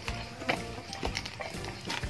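Background music with a few sharp clicks, as the red plastic screw cap of a plastic jerry can is handled.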